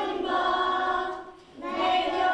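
A group of young children singing a song together, with a short breath between phrases about a second and a half in.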